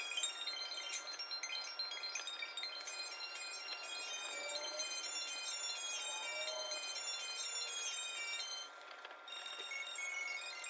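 Background music of scattered, high, chime-like notes ringing one after another, with a short drop in level a little before the end.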